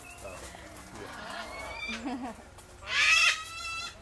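A macaw gives one loud squawk about three seconds in, lasting about half a second. Quieter voices come before it.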